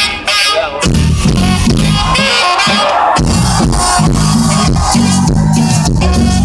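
Live band music played loud through a festival sound system. The music thins out briefly just after the start, then comes back in full with a steady beat.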